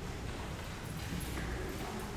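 Footsteps on a hard church floor, a faint irregular clatter of steps, with low room rumble.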